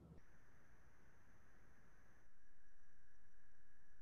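Faint steady background noise, a low hiss with a thin high whine in it. It gets slightly louder about halfway through and cuts off suddenly at the end.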